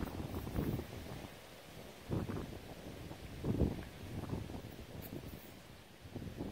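Faint wind rumbling on the phone microphone, with a few soft low swells, the strongest about two and three and a half seconds in.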